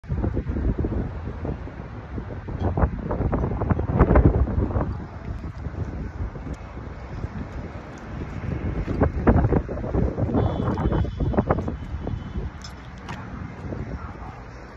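Wind buffeting a phone's microphone, a low rumble that comes and goes in gusts.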